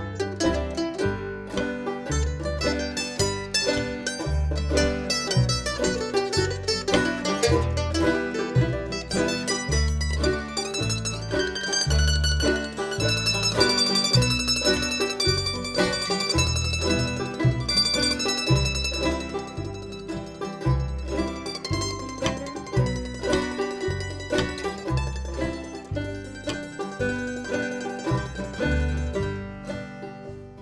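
Old-time string band playing an instrumental passage: the mandolin stands out over banjo and acoustic guitar, with an upright bass plucking steady low notes underneath.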